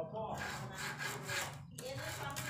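Repeated scraping strokes of a small hand tool working the wooden edge of a door around a lock faceplate, about two to three strokes a second.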